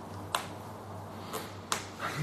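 Three short, sharp clicks over a faint low hum: the first and loudest soon after the start, the other two close together near the end.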